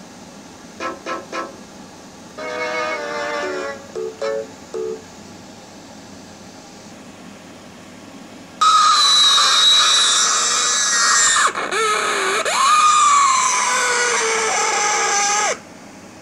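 A few short plucked ukulele-like notes, then after a pause a very loud, shrill, high-pitched screech lasting about seven seconds, deliberately ear-splitting. Its pitch drops sharply about halfway through, climbs back and slides down again before it cuts off suddenly.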